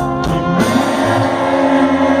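Live rock band playing over a festival PA, heard from the crowd. The drum hits stop about half a second in, leaving a sustained chord from guitars and keyboard.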